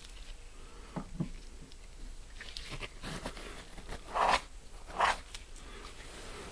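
Small sticky scraping and dabbing sounds of epoxy bedding compound being worked into a rifle stock's action inlet, with two louder brief rushing noises about four and five seconds in.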